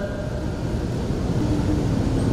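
Low, uneven rumble picked up by a handheld microphone in a pause between recited verses, with a faint steady hum coming in about halfway.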